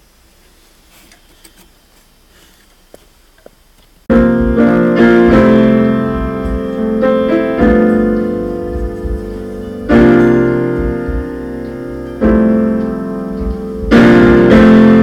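Piano chords with deep low notes, starting abruptly about four seconds in after a few seconds of quiet room sound with faint clicks; fresh chords are struck again twice later and ring on.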